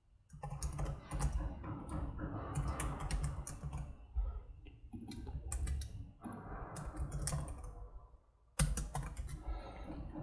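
Typing on a computer keyboard: quick runs of keystrokes, with a brief pause about eight seconds in.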